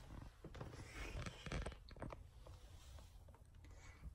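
Faint rustling and a few small ticks of handling noise over quiet room tone, a little busier in the first two seconds.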